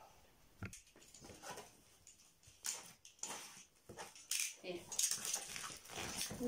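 Rustling and crinkling of present packaging being handled and opened, in irregular short bursts, with a sharp click about half a second in.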